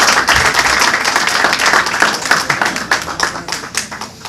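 A small audience applauding, the clapping thinning out and dying away near the end.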